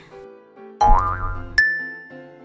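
Soft children's background music with a cartoon boing sound effect about a second in: a rising, wobbling pitch over a low thump. It ends in a short click and a ringing ding that fades away.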